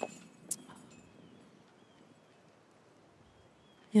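A disc golf putt striking the chain basket high with one short, sharp metallic tick and not catching. After it, only a quiet outdoor hush with a few faint high chirps.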